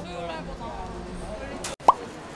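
Indistinct voices and street noise, cut off abruptly near the end and followed by a short, loud, upward-sweeping pop: an editing sound effect for an on-screen caption.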